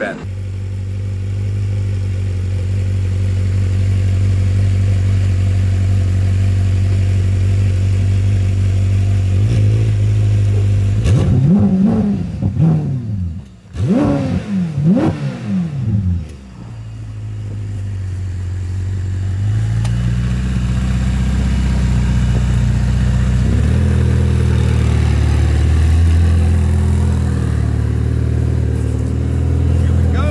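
Ferrari F8 Tributo's twin-turbo 3.9-litre V8 idling, then revved in a few quick blips about halfway through before settling back to idle. Near the end it runs fuller and stronger as the car pulls away.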